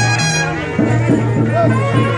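Brass band music with a steady bass line, playing continuously.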